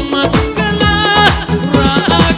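Live band playing up-tempo dance music with a steady beat and a sustained melody line.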